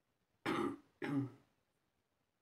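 A person clearing their throat: two short, rough bursts about half a second apart.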